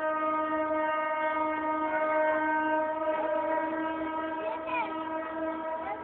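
Horn of an EMD GT22 diesel locomotive sounding one long, steady blast that holds at an even pitch throughout.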